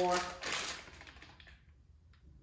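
A small plastic packet crinkling as it is handled and turned over in the hands, a short crackle that fades out about a second and a half in.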